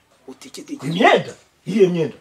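Speech only: a voice speaking in short, emphatic phrases, one rising and then falling in pitch about a second in.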